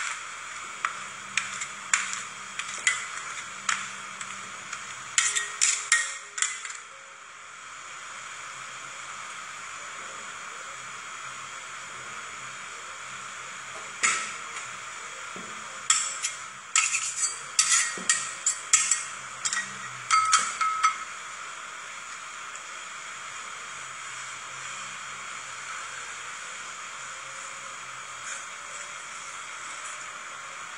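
Metal spatulas tapping and scraping on the frozen steel plate of a rolled-ice-cream cold plate as a thin sheet of ice cream is scored and rolled up. The taps come in two clusters, one in the first seven seconds and one starting about a quarter of the way in that runs for roughly seven seconds, with a steady low hum underneath.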